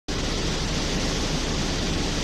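A steady, even rushing hiss of background noise, without any rhythm or tone.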